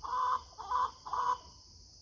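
A chicken clucking, about three short calls in the first second and a half, with insects buzzing steadily in the background.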